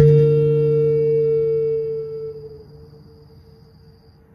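Rav Vast steel tongue drum: a struck note rings out at the start and fades away over about two and a half seconds, leaving a faint lingering tone.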